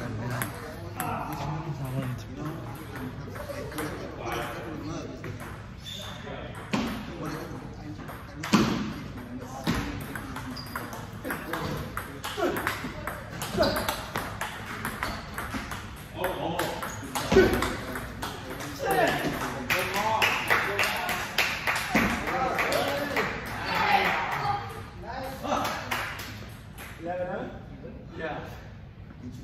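Table tennis ball clicking sharply off the rubber paddles and the tabletop as it is hit back and forth, in short quick strings of strikes. Voices talk through the later part.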